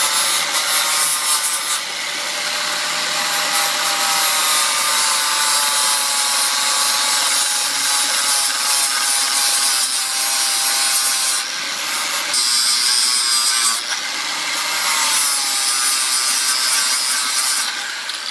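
Angle grinder with a 40-grit flap disc grinding the cut steel hub of a riding-mower wheel smooth: a continuous motor whine over harsh grinding noise, its pitch wavering slightly as the disc works the metal.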